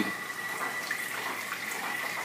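Stir-Plate 3000 magnetic stir plate running at full speed, its stir bar spinning a vortex in a beaker of 1000 ml of water: a steady swirling-water sound with a thin, steady high whine.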